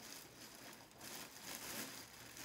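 Faint crinkling and rustling of a clear plastic bag as clothing is pulled out of it.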